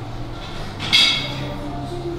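A single sharp metallic clink of dumbbells about a second in, ringing briefly, over background music with a steady bass line.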